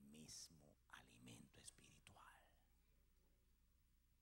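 Faint whispered speech for about the first two seconds, then near silence with a faint steady low hum.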